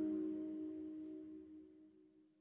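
The last chord of a slow, sad indie ballad ringing out and fading away to nothing.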